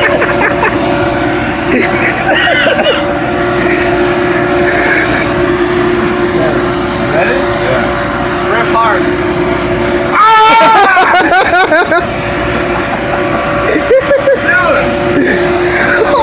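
People's voices and laughter over a steady machine hum and background noise. About ten seconds in comes a loud, wavering vocal cry lasting around two seconds.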